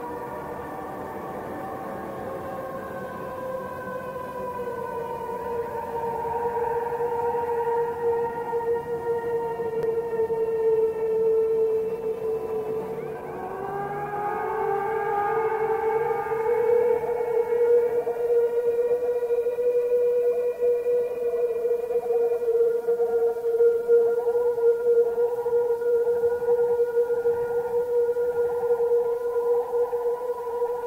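Ambient drone: a sustained tone with several overtones holds one pitch, bends down and back up about halfway through, and grows steadily louder.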